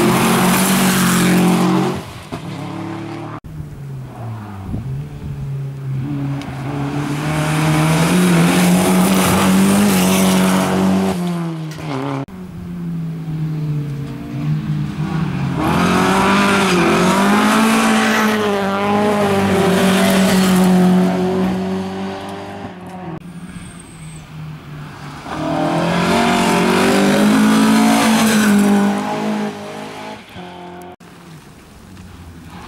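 Rally cars at full throttle passing one after another on a gravel stage, with engine revs climbing and dropping through gear changes and lifts. A Subaru Impreza's flat-four passes at the start and a Volvo 240 about halfway through. Between passes the sound drops away quickly.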